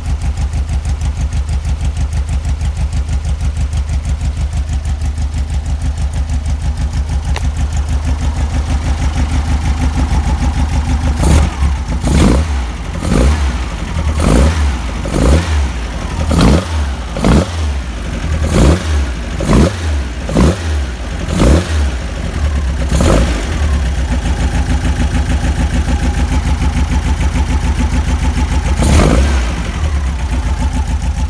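VW Beetle 1303S air-cooled flat-four with twin Weber carburettors idling steadily, then revved in about a dozen quick throttle blips that rise and fall, settling back to idle, with one more blip near the end.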